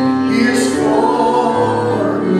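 A group of voices singing a slow worship song, holding long notes.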